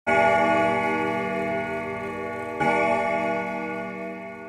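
Bell-like chime of many ringing tones, struck twice about two and a half seconds apart, each strike ringing on and slowly fading.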